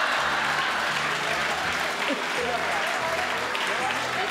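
Audience applauding steadily, with a few voices underneath.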